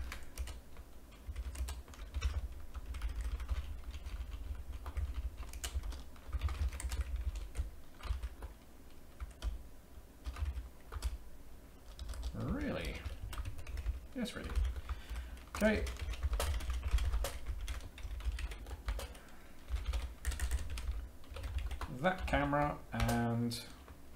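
Typing on a computer keyboard: a quick, irregular run of keystrokes, with short pauses between bursts. A couple of brief murmured vocal sounds come about halfway through.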